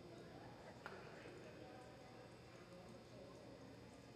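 Faint hoofbeats of a reining horse loping on arena dirt, with one sharp click about a second in.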